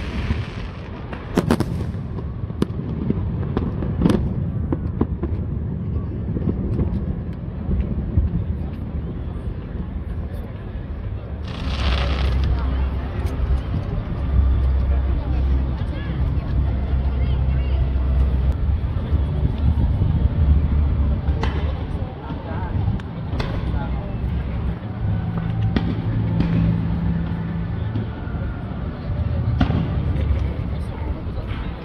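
Fireworks going off in scattered bangs: a few sharp reports in the first seconds, a bigger burst about twelve seconds in, and more bangs in the last third. Under them run a steady low rumble and the chatter of onlookers.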